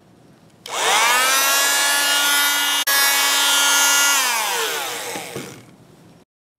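Electric bone saw motor spinning up about a second in to a steady high whine, with a brief break near the middle, then winding down with falling pitch and fading out.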